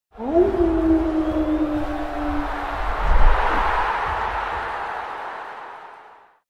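Logo intro sound effect: a quick rising tone that settles into a held note, then a swelling whoosh with a deep hit about three seconds in, fading away by the end.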